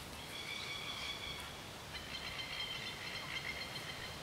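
A high-pitched, steady trilling animal call in the background, held for about two seconds and then again for about two more at a slightly different pitch.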